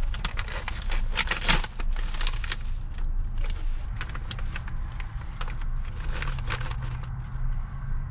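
Plastic bag crinkling and crackling in many short bursts as a cooked whole chicken is pulled apart by hand and cut with a knife, over a steady low hum.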